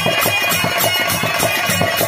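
Live Bhojpuri birha accompaniment music through a PA: a fast, steady percussion beat over a held drone note, with no singing yet.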